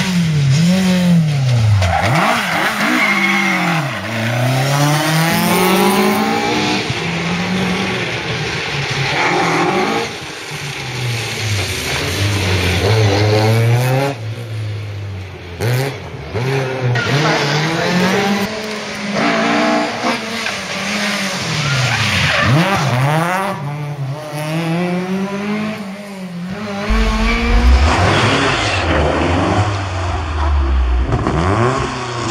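Ford Escort Mk2 rally car engine revving hard, its pitch climbing and dropping again and again through gear changes, over several separate passes cut one after another.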